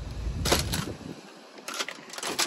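An EZPIK reacher-grabber clicking as its jaws are worked, with two sharp clicks in quick succession about half a second in.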